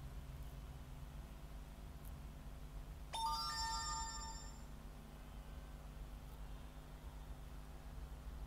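A short electronic chime, several bright tones sounding together, starts suddenly about three seconds in and fades out over about a second and a half, over a steady low hum.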